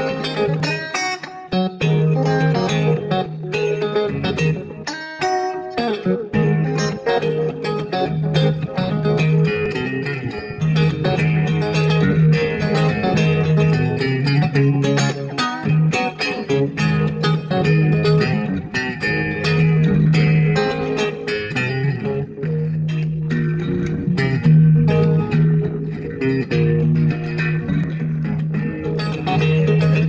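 Instrumental electric blues: an electric guitar playing lead lines over a repeating bass line.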